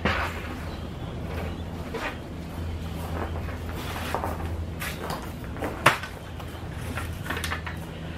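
Scattered knocks and clatter of black plastic seedling cell trays being picked up and handled, the sharpest knock about six seconds in, over a steady low hum.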